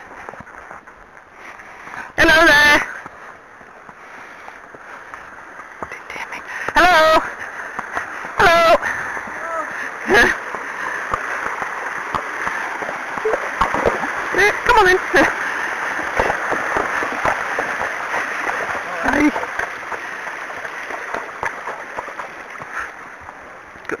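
A horse wading through a shallow stream ford, hooves splashing in the water, with the rush of the stream building as it crosses and fading as it climbs out. Several short, loud, wavering cries cut in over it.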